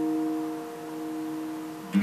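End-screen music: an acoustic guitar chord ringing out and slowly fading, with the next strum coming in just before the end.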